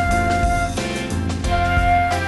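Silver concert flute playing a slow exercise melody. It holds one note for under a second, rests, then sounds the same note again near the end, over a backing track with bass and a steady beat.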